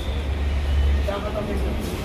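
A low rumble that fades out about a second in, with faint speech behind it.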